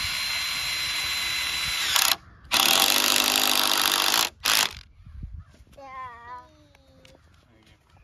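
Cordless drill driving screws into a wooden frame: a steady whirring run of about two seconds, a short blip, then a second two-second run and another short blip. A small child's voice follows briefly about six seconds in.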